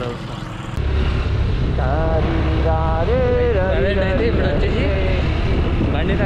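Wind rumbling on the microphone and engine noise while riding a two-wheeler along a road, setting in suddenly about a second in. A voice sings over it from about two seconds in.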